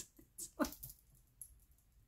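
A woman's brief, quiet laughter: a few short breathy bursts in the first second, then it dies away.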